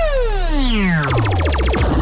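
Synthesized radio-station jingle effect: a pitched electronic tone sweeps steadily down from high to low over about a second and a half. A fast, even electronic pulsing comes in about a second in.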